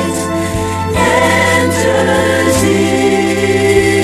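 Choir singing a sacred song in held, sustained notes. The chord changes about a second in and again near two and a half seconds.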